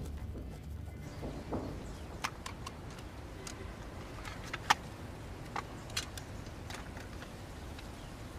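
A series of small, sharp plastic clicks and taps from a clear cassette tape case being handled, over a faint low background; the loudest click comes about halfway through.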